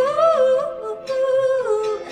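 A woman's voice, amplified through a microphone, singing a wordless, hummed melody: held notes that slide up and down in pitch, with a short break about a second in.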